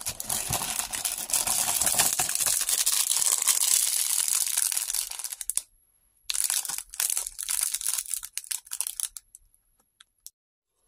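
Clear plastic polybag of small LEGO pieces crinkling as fingers handle it, in two stretches with a short pause about five and a half seconds in.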